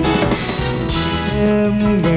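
Music: a pop backing track playing between sung lines, with a bright high accent about half a second in and a long held note near the end.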